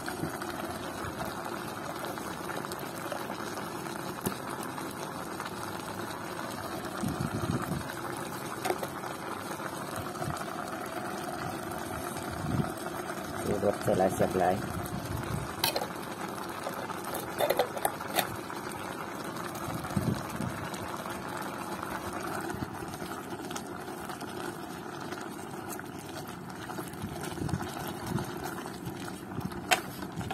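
Pot of beef om stew simmering, with steady bubbling and a few faint clicks.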